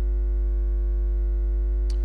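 Steady electrical mains hum in the church's sound system: a strong low hum with a row of higher, evenly spaced buzzing tones above it, unchanging throughout.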